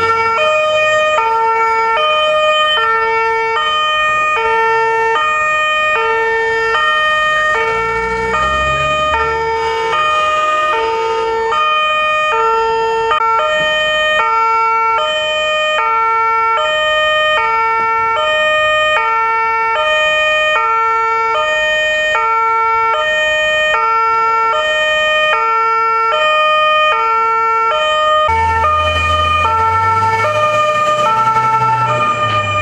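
Police armoured truck's two-tone siren alternating steadily and rapidly between a high and a low note. A low rumble joins it a few times, about eight seconds in and again near the end.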